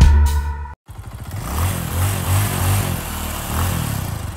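A rock music track cuts off abruptly in the first second. A motorcycle engine then revs, its pitch rising and falling several times.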